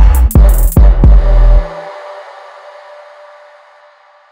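Electronic music track with deep, loud bass-drum hits and a synth lead made from a resampled vocal sample. The beat stops about one and a half seconds in, leaving a ringing tail that slowly fades away.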